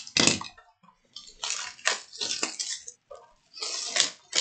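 Plastic shrink wrap being torn and crinkled off a trading-card hobby box, in several rustling bursts.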